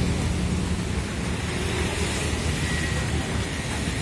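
Steady street traffic noise: a low rumble with an even hiss of tyres on a wet road, and no single event standing out.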